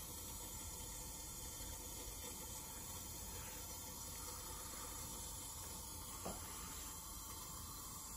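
Faint, steady trickle of water from a hose outlet running into a lab sink, with a single small tick a little after six seconds.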